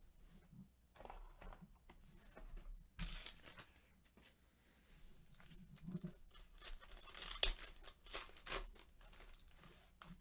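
Foil trading-card pack being torn open and its wrapper crinkled, with cards sliding against each other: a run of faint, short rustles and tears, busiest and loudest in the second half.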